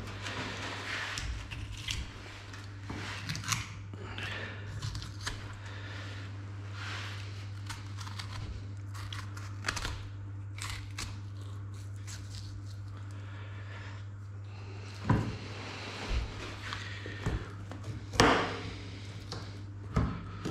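Boning knife cutting and scraping through a pork shoulder at the elbow joint to free the shank bone, with small crackling and clicking from the meat and knife, and a few louder knocks near the end. A steady low hum runs underneath.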